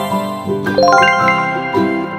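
Twinkly chime sound effect: about half a second in, a quick run of rising bell-like notes rings out over a light children's background music track.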